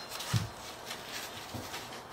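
Quiet handling noises from hands moving things on a tabletop: faint rustling, with one soft low thump about a third of a second in.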